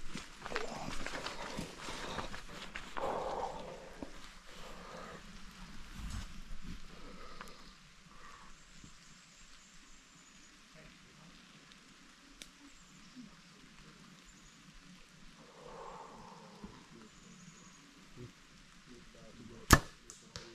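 A compound bow being shot once, a little before the end: a single sharp snap, by far the loudest sound. Before it come quieter rustling and handling sounds in the leaf litter.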